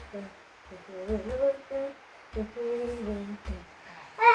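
A voice humming a slow tune in short held notes. Soft low thuds come a few times as a child's feet press down on a person's back.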